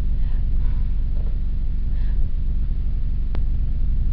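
Steady low background rumble and hum, with a single sharp click about three seconds in.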